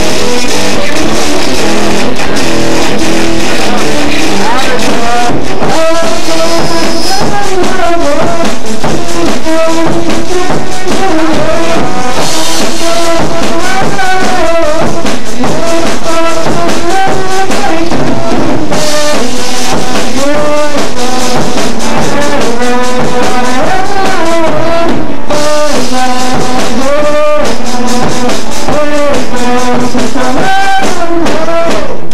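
Live rock band playing loudly: electric guitar and a Sonor drum kit, with a male voice singing over them from about five seconds in.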